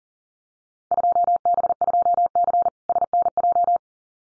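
Morse code at 40 words per minute: a single steady mid-pitched tone keyed rapidly on and off, starting about a second in and running for about three seconds. It sends a Field Day contest exchange, 2B 2C SNJ (southern New Jersey).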